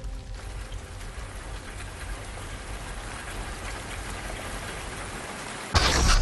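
Steady rain falling, an even hiss with a low rumble beneath. A sudden, much louder sound cuts in just before the end.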